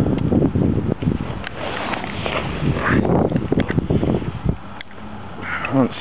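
Handling noise from a hand-held camera's built-in microphone: irregular knocks and rubbing as the camera and a laptop are carried along, with wind on the microphone, busiest in the first four seconds and quieter near the end.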